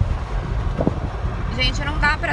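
Wind buffeting the microphone and road rumble in an open-top convertible moving at highway speed, a steady low rumble throughout. A woman's voice comes in near the end.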